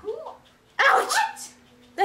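A dog barking: a short bark at the start, then a louder double bark about a second in.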